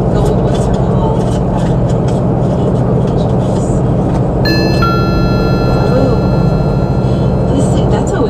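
Steady road and engine rumble of a vehicle driving on a freeway, heard from inside the vehicle. About halfway through, a steady high-pitched electronic tone of several pitches starts and holds.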